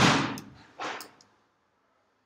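Loud pops from tire-shop work: a big one at the start that fades over about half a second, then a smaller one about a second in.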